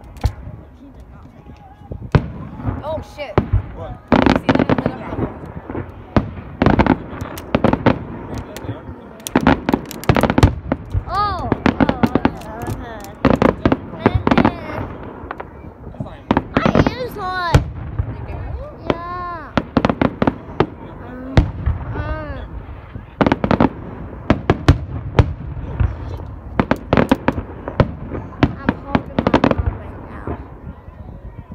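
Aerial fireworks bursting in a rapid barrage of loud bangs and crackles. The bangs come close together from about two seconds in onward.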